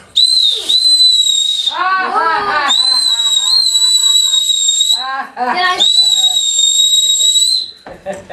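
A whistle blown in three long, steady, high-pitched blasts, each lasting about two seconds, with short gaps of voices between them.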